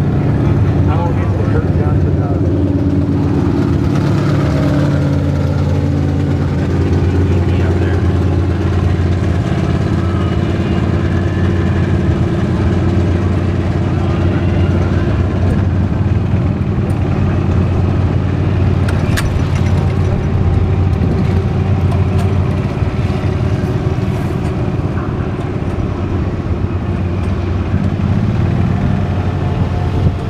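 A small vehicle's engine running at a low, even speed as the vehicle rolls slowly along, giving a constant low hum.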